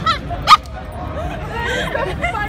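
Small Maltese dog yipping: two short, sharp yaps about half a second apart, the second the louder, over background chatter.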